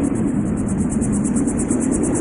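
A steady rushing noise, much like a jet engine, with a fast even flutter of about nine pulses a second in the treble: a noise passage in electronic outro music.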